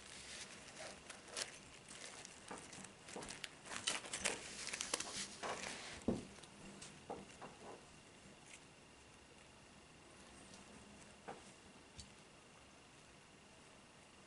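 Small metal rings of a chainmail arm guard clinking and rustling against each other as it is handled and flexed on the forearm: a busy run of light clinks over the first six seconds, then only a few scattered clicks.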